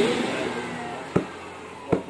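Two short dull knocks, about a second and just under two seconds in: a hand tapping the cone of a 24-inch woofer.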